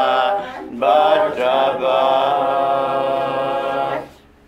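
A small group of men singing unaccompanied in slow, drawn-out phrases, with a short breath under a second in and then a long held note that stops abruptly near the end.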